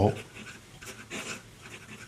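A Sailor Pro Gear 14-carat gold music nib scratching softly across smooth paper in a few short strokes as a word is written. The nib runs smoothly, a sign of its fine final polishing.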